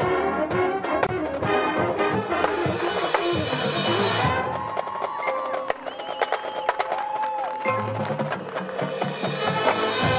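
Marching band playing, brass with drums: full band and drum strokes for the first few seconds, then a thinner passage of held notes, with low brass coming back in near the end.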